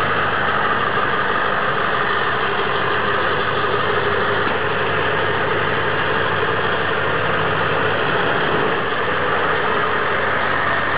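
Ford F-250 pickup's engine idling steadily.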